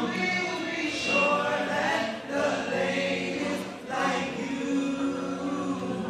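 Six-man male vocal group singing a cappella in close harmony through microphones, with a low bass note held steady beneath the upper voices.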